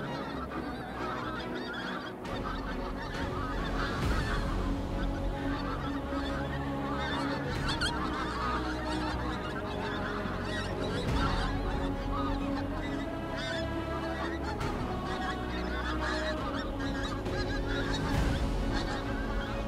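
A flock of pink-footed geese calling in flight: many overlapping honks without a break.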